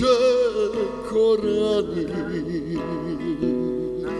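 A man singing a slow song, holding long notes with vibrato, accompanied by a strummed acoustic guitar.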